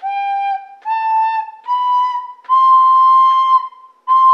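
A soprano recorder plays a slow stepwise phrase, one tongued note at a time: G, A, B, rising to a C held for about a second, with the next C starting near the end.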